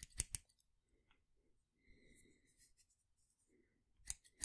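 Scissors snipping three times in quick succession right at the start, sharp metal blade closures.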